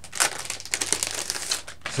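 Plastic crinkling and rustling with many small clicks as records are picked up and handled, starting just after the beginning and stopping just before the end.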